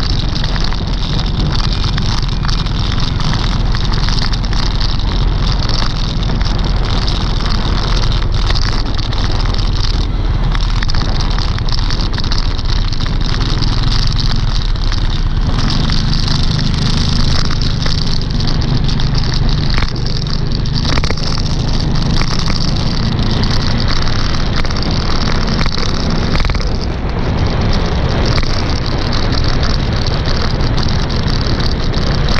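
Steady rumbling wind and road noise from riding a two-wheeler through city traffic, loud and unbroken, with no clear engine note standing out.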